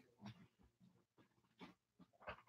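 Near silence: room tone, with two faint, brief sounds, one about a quarter second in and one near the end.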